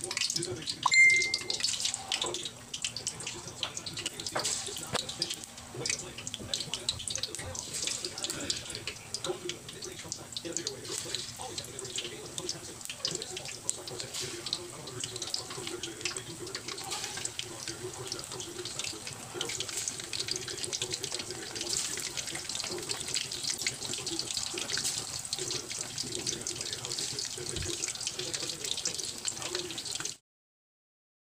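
Battered fish fillets deep-frying in hot oil in a steel wok: a steady sizzle full of small crackles. A short high tone sounds briefly about a second in.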